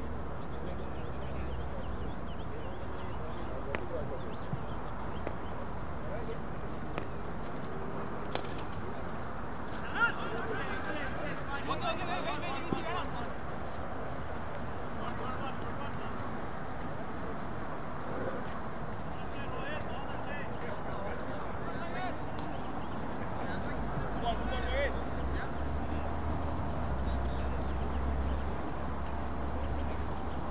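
Distant men's voices talking and calling on a field over a steady low rumble, with one sharp knock about ten seconds in.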